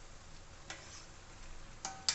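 Metal spoon clinking twice against an iron kadai, a little over a second apart, as kofta balls are turned in hot oil, over a faint steady sizzle of frying.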